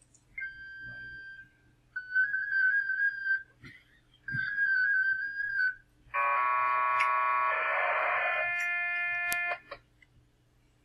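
FLDigi digital-mode radio transmission audio. It opens with a steady single carrier tone for about a second, then two shorter wavering tones, which are the handshake announcing the mode. Then comes a dense chord of many parallel steady tones for over three seconds, the multi-carrier PSK250 data sent as six streams, with a sharp click near the end.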